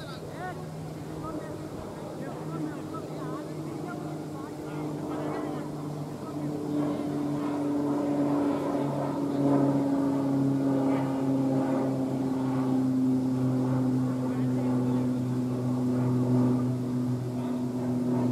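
A steady engine drone, its pitch slowly sinking as it grows louder from about six seconds in, with faint distant voices.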